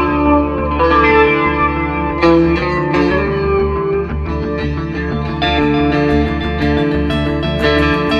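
Instrumental rock music: electric guitars through chorus and distortion effects play sustained notes over steady bass, with regular drum and cymbal hits growing more prominent about five seconds in.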